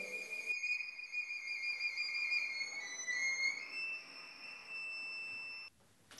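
Violin playing a slow, high melody of long held notes, stepping down a little in pitch about halfway, then up to a higher note that is held until it cuts off suddenly shortly before the end.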